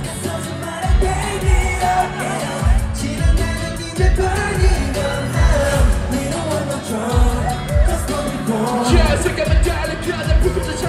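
K-pop boy group performing live through an arena sound system: singing over a pop backing track with a heavy bass drum beat about twice a second.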